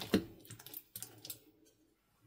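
Wet slime squelching and clicking as a silicone spatula stirs and lifts it: one loud squelch just after the start, then a few smaller sticky clicks that die away in the last half second.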